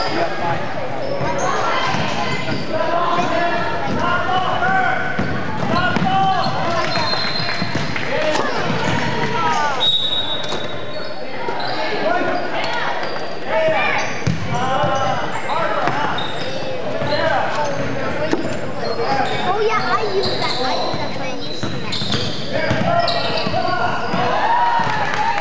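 A basketball bouncing on a hardwood gym floor, with many voices of players and spectators talking and calling out over each other in a large echoing gym. A brief high steady tone sounds about ten seconds in.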